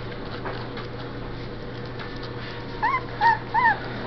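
Puppy whimpering: three short, high whines that rise and fall, in the second half.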